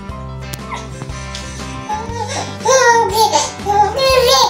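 Background music runs throughout. In the second half a baby of about four months makes several loud babbling, cooing vocal sounds that bend up and down in pitch.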